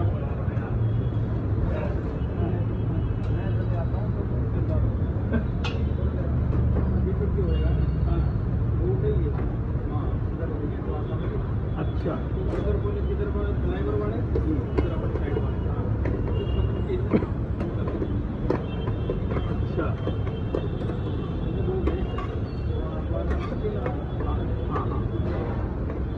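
Busy street-stall ambience: a steady low rumble with indistinct voices, and scattered sharp clicks of a metal spatula against the omelette pan.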